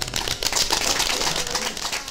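A small audience applauding: many irregular hand claps that start as the guitar song ends.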